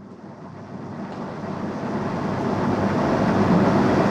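A steady rushing background noise in the room that swells gradually louder.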